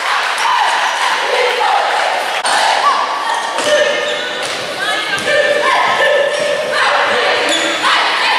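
Crowd of spectators in a gymnasium, many voices talking and shouting at once, echoing in the hall; from about halfway, drawn-out calls that sound like chanting.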